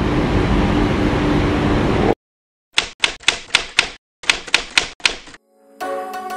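Steady city street traffic noise for about two seconds cuts off abruptly. After a silent gap come two quick runs of sharp typewriter keystroke clicks, about four a second, likely an edited-in sound effect. Music begins just before the end.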